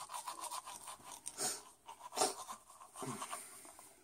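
Faint, irregular rustling and scratching from a handheld phone being moved about, with a few short hissy bursts.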